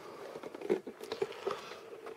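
Faint handling noise: a few light knocks and rubs as an old plastic model-railway controller box is picked up and turned over in the hands.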